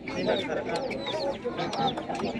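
Chickens clucking, many short calls overlapping, over the hubbub of people talking.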